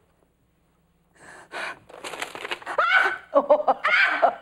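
A woman gasping and exclaiming breathlessly, half-spoken, as she hunts frantically for a lost object. The sounds begin after about a second of quiet and grow louder and quicker towards the end.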